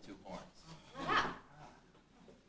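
An actor's voice speaking in two short phrases with pauses between them.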